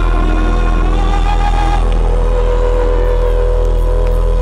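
Live concert music over a large PA: a loud, held deep bass note with sustained keyboard-like tones above it, steady throughout.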